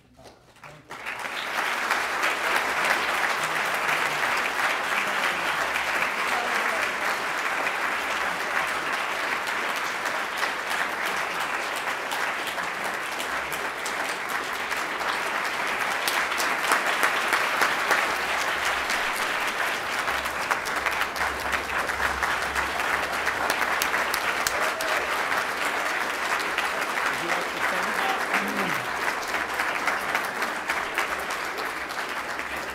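Audience applause, starting about a second in and holding at a steady level.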